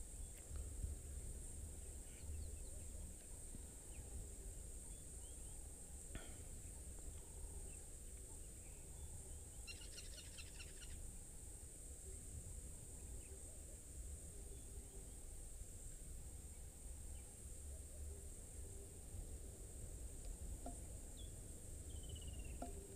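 Faint bush ambience: a steady high-pitched insect drone with a low rumble underneath, and scattered bird calls, the clearest a short trilled call about halfway through.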